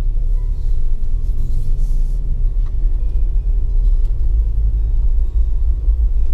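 Steady low rumble of a car driving slowly, picked up by a camera mounted on its hood, with a brief hiss about a second in.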